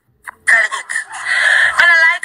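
A woman crying and wailing in high, drawn-out cries, with no clear words.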